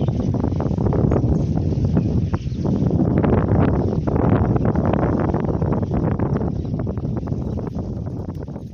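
Wind buffeting the microphone outdoors: a loud, low, gusty rumble that swells and dips irregularly.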